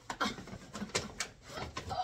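Cardboard box being pulled open and rummaged through: a series of short rustles and knocks from the cardboard and the things inside it.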